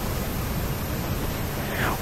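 A pause in speech filled by a steady, even hiss of room tone.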